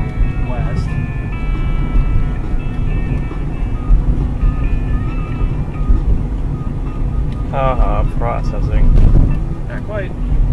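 Steady low road and engine rumble of a moving car heard from inside, with rock music playing over it. A voice comes in briefly near the end.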